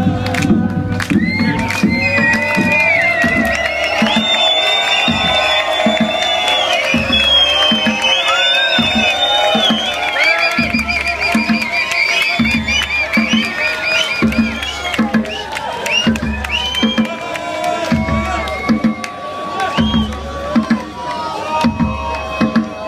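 Dance music played loud over a club sound system, with a crowd cheering over it. A deep, steady beat comes in about three seconds in.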